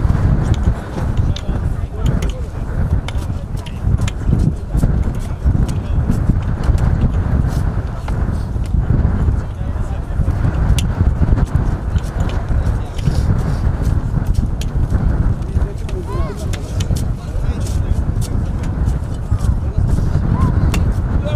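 Indistinct voices of people talking over a steady low rumble, with many short knocks and scrapes from spades digging into dry soil.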